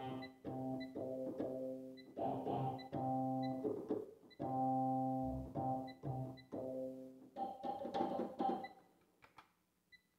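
Korg Triton keyboard workstation playing a light guitar patch: pitched notes and chords struck on the keys in a rhythmic pattern. Faint high ticks repeat through it.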